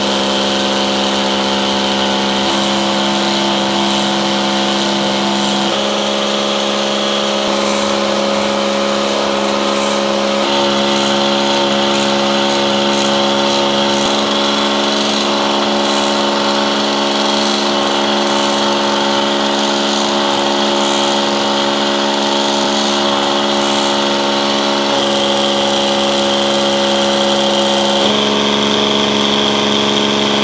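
Small electric coolant pump running steadily, circulating hot antifreeze through a leaking radiator that is being sealed with stop leak. A steady hum whose tone shifts slightly a few times.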